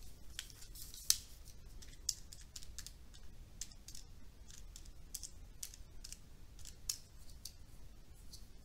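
Faint, irregular clicking of small buttons being pressed, a couple of dozen clicks, with louder ones about a second in, about two seconds in and near seven seconds.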